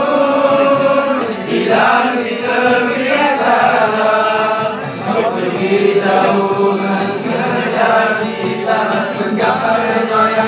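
A group of young men singing a Malay nasyid song together, unaccompanied, in loud, continuous voice.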